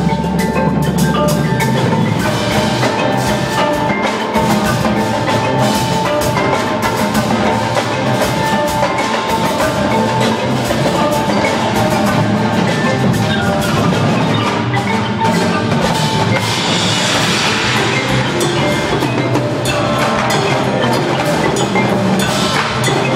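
Indoor percussion ensemble performing: marching drums play dense rapid strokes over sustained notes from marimbas and other mallet keyboards, loud and steady.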